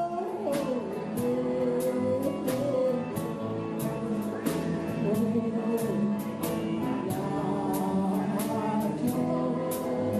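A woman singing into a microphone over a live country-style band, with electric guitars and a drum kit keeping a steady beat.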